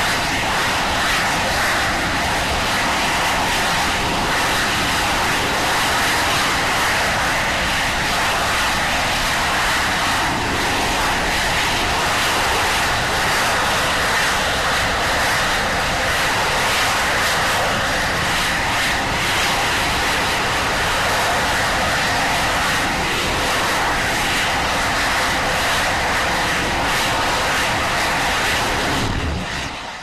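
Firefly Alpha rocket stage firing its engines in a static hotfire acceptance test: loud, steady rocket exhaust noise without a break. It cuts off sharply near the end as the engines shut down after a full-duration burn.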